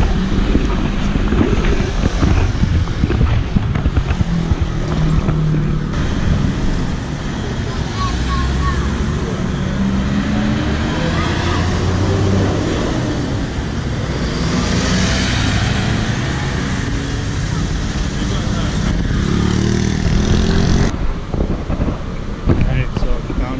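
City street traffic: cars and motor scooters passing at an intersection, their engines rising and falling in pitch over a steady low rumble.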